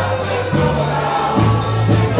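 Live Polish folk dance band playing a dance tune, with a steady beat and a stepping bass line.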